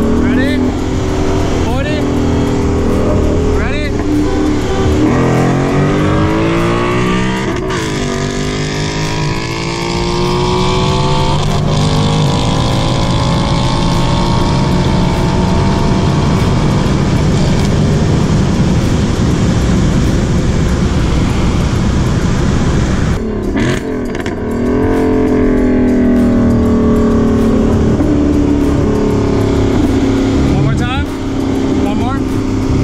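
Dodge Challenger SRT 392's 6.4-litre Hemi V8 at full throttle in a roll race, heard from inside the cabin: the revs climb from about five seconds in, with breaks where it shifts up. Near the end the throttle is lifted and the engine pulls hard again for a second run.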